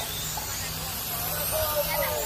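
Radio-controlled late model race cars running laps on a dirt oval, their motors making a high whine that rises and falls as the cars pass.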